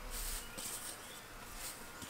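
Faint hiss of rock dust thrown by hand and settling onto a hay-covered compost pile, a little stronger in the first half second as it lands.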